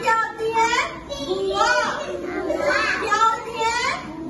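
Young children's voices, several of them talking and calling out together.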